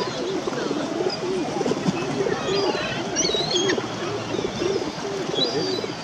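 Pigeons cooing over and over, with higher bird chirps around the middle.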